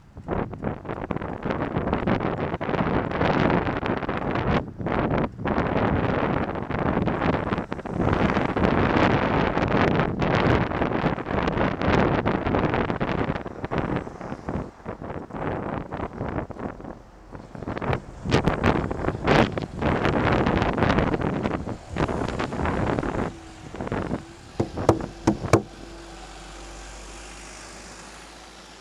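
Wind buffeting the microphone of a camera on a moving bicycle, mixed with road traffic, loud and gusting for most of the stretch. There are several sharp knocks in the later part, and a bus comes close alongside near the end. The noise drops off suddenly about two seconds before the end as the bike slows.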